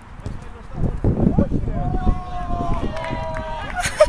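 Men's voices shouting and calling out, some in long drawn-out calls, with wind rumbling on the microphone. A sudden knock comes near the end, followed by a quick burst of shouts.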